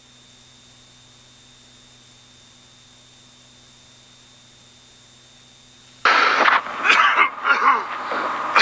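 A man coughing and choking in loud, ragged fits, starting about six seconds in over a steady low hum.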